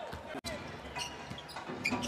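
Arena game sound: a basketball bouncing on a hardwood court, with a steady crowd murmur behind it. The sound cuts out for an instant about half a second in.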